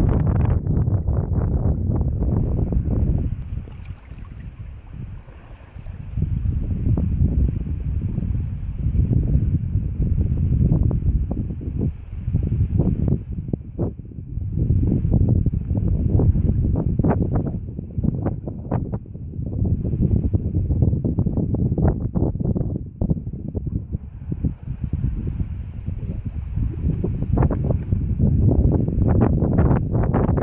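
Wind buffeting the microphone in uneven gusts, dropping to a lull about four seconds in and then picking up again.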